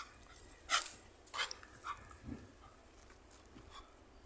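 A leashed young dog giving a few short yelps, the first about a second in the loudest, with fainter ones spread through the rest.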